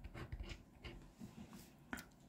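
Faint, scattered scraping strokes of a small metal-tipped scraper rubbing the latex coating off a paper scratch card.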